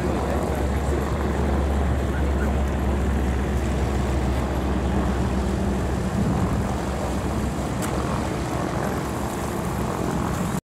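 Propeller aircraft engine running with a steady low drone.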